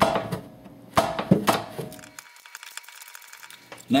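Ratcheting wrench clicking as it turns the 8 mm locking bolt on a Ford 7.5 differential carrier. There are a few sharper metal knocks in the first couple of seconds, then fainter rapid clicking.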